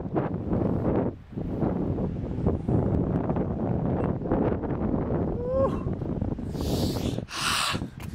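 Wind buffeting the microphone, a steady low rumbling rush, with a short rising voice-like sound about halfway through and two brief hissing bursts near the end.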